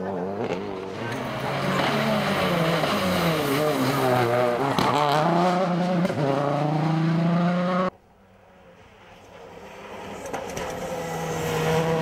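Suzuki SX4 rally car engine revving hard, its pitch rising and falling with each gear change as it passes and pulls away. About eight seconds in the sound cuts off suddenly, and another rally car's engine is heard approaching, growing steadily louder.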